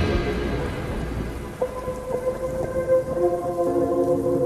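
Rain and thunder ambience in a slowed, bass-boosted song's quiet passage, after the full band cuts off. Soft sustained notes come in over the rain about one and a half seconds in.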